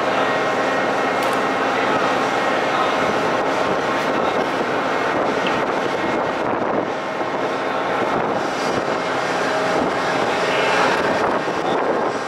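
Steady, loud drone of heavy machinery, a constant noise without strokes or rhythm.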